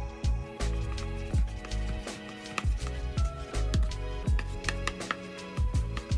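Background music with a steady beat and bass.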